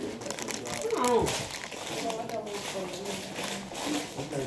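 Plastic snack-chip bag crinkling in many small crackles as it is handled, with voices in the background.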